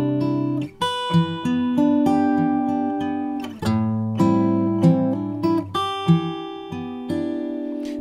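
Fingerstyle steel-string acoustic guitar, capo at the third fret, played solo: a slow passage of plucked chords and melody notes, each left ringing on under the next so the notes overlap.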